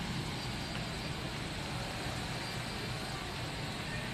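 Steady, even background noise of a large warehouse store's interior, a low hum with no distinct events.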